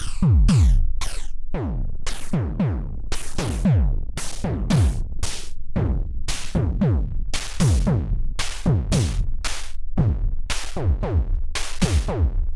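Electronic drum pattern of analog kick and snare with digital hi-hats, a hit every third to half a second and each kick falling in pitch, played through a 12-stage JFET phaser with its resonance turned up high. The phaser's frequency is being swept down by hand, moving the accented part of each hit.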